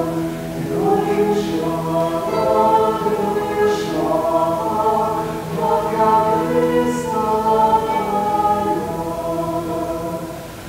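A man and a woman singing a slow song in long held notes, accompanied by a bowed cello and a mandolin.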